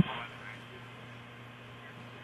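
Open launch-commentary radio line between calls: a short burst of sound right at the start, then a steady faint hum and hiss.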